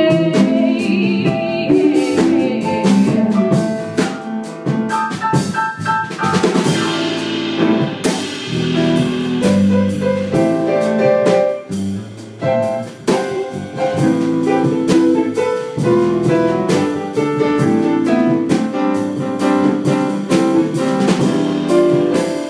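Small live jazz band playing an instrumental passage, with a drum kit keeping time on cymbals and drums under pitched instruments; a cymbal rings out about six seconds in.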